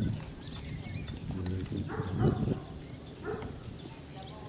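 Horse trotting on the sand footing of a dressage arena under a rider; the sound grows louder for about a second halfway through.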